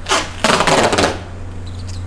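Silver duct tape being pulled off the roll: a short rip, then a longer rasping rip that lasts about half a second.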